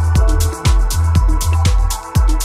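Deep and progressive house music from a DJ mix: a steady four-on-the-floor kick drum at about two beats a second over a sustained bassline, with hi-hats between the beats and held synth chords.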